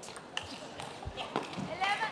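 Table tennis ball being hit back and forth in a fast rally: sharp clicks off rackets and table a few tenths of a second apart, with a low thud about a second in. A voice shouts near the end as the point finishes.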